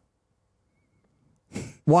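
Silence for about a second and a half, then a short, breathy throat sound from a man just before he speaks.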